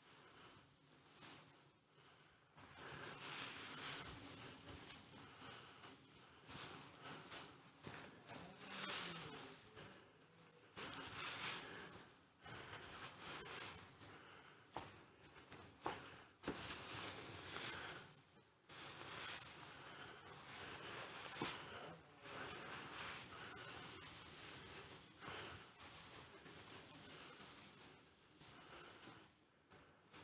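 Dry hay rustling in irregular bursts of a second or so as armfuls are scooped off straw bedding and tossed, with a few light ticks among them.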